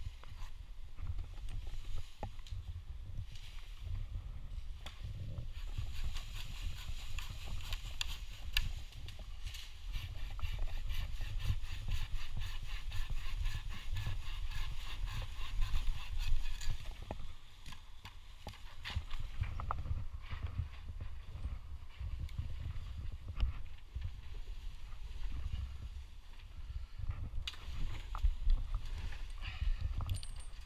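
Hand pruning saw cutting through a small ash branch in quick, regular back-and-forth strokes, starting several seconds in and stopping about two-thirds of the way through. A low rumble of wind and handling on the helmet-mounted microphone runs underneath.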